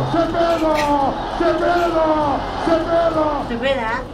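A person's voice calling out in about four long, drawn-out cries, each falling in pitch at the end.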